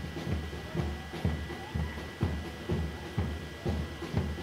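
Live band music from the roadside with a steady drum beat of about two beats a second.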